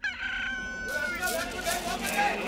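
A rooster crows once, one long held call, followed by scattered short chirping calls of birds and fowl.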